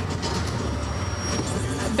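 Steady, even background noise of a busy exhibition hall, with no distinct single event standing out.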